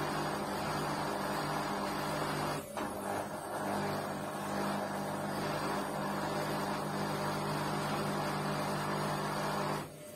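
LG Intellowasher front-loading washing machine running with a steady hum. The hum dips briefly about three seconds in and cuts off just before the end.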